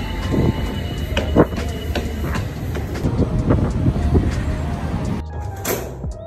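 Background music over a steady low train rumble, with scattered footsteps. The sound cuts to something quieter near the end.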